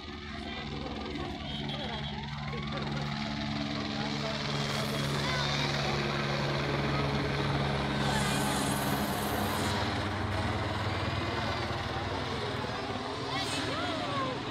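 Helicopter flying low overhead, its rotor and engine a steady drone that grows louder over the first few seconds. The low hum drops slightly in pitch about halfway through as it passes.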